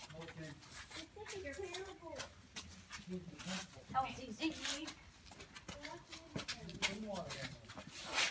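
Indistinct voices of people talking, quieter than nearby speech, with scattered short taps and scuffs.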